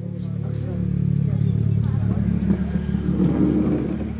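A motor vehicle's engine running near the house, a steady low hum that grows louder over the first second or two and then holds, with faint voices over it.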